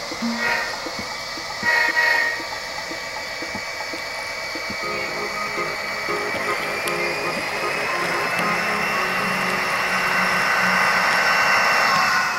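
HO-scale model diesel locomotives and passenger cars running past on layout track, with a steady high whine that rises slowly in pitch and grows louder as the train comes by.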